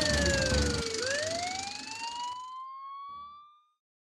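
A siren wailing once. Its tone slides down, turns about a second in and climbs again, while a low-pitched music bed under it cuts off at the turn. The siren fades away shortly before the end.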